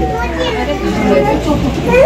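Overlapping voices of adults and small children talking at once, a busy chatter of speech.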